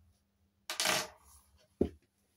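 Small metal keys of a toy safe being set down on a hard tabletop: a short, scraping metallic clink about a second in, then a single dull tap near the end.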